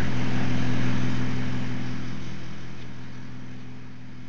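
A steady low mechanical hum of a few even tones, slowly fading.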